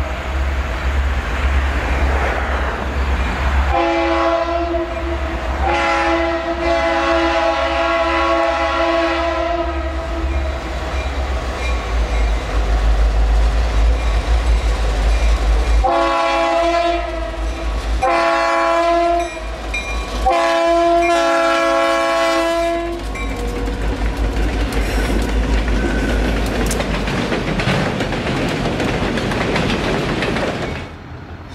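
Diesel freight locomotive's air horn sounding five blasts: two long ones, then after a pause three shorter ones, the last a little longer, over the steady low rumble of the engines. Then the clatter of empty autorack cars rolling past.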